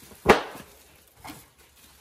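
One sharp thump from items being handled in a car trunk, about a third of a second in, then a much fainter short sound about a second later.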